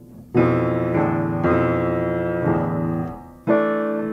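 Piano playing a jazz piece on the Japanese In-sen pentatonic scale: about five chords struck in turn and left to ring, the first coming in shortly after a quiet start and the last after a brief fade near the end.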